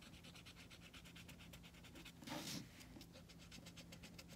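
Faint scratching of a felt-tip marker coloring a cardboard egg-carton heart, with one short breath about halfway through; otherwise near silence.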